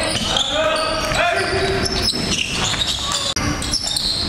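A basketball bouncing on a hardwood gym floor during live play, with players' voices calling out across the court.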